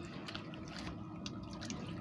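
Faint wet trickling and scattered small clicks of Orbeez water beads and water shifting in an inflatable pool as a boy settles back into them.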